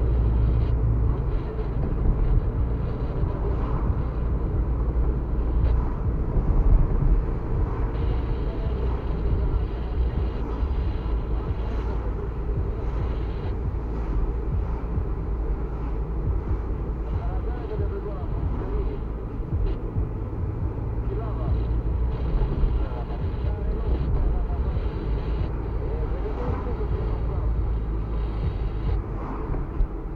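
A car driving along a town street, heard from inside the cabin: a steady low rumble of engine and tyre noise.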